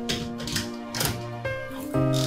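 Background music with long held notes, over which come about four sharp clicks and knocks from a door being unlatched and opened.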